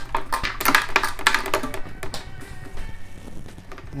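A guitar pick rattling and clicking around inside an acoustic guitar's hollow body as the guitar is shaken upside down, with the loose strings jangling. The rapid clicking lasts about two seconds, then dies away into the faint ring of the strings.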